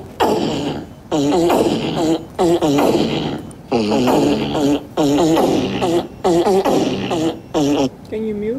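Fart sound effects played loudly through a laptop's speakers: about eight pitched bursts, each under a second long, with the pitch sliding.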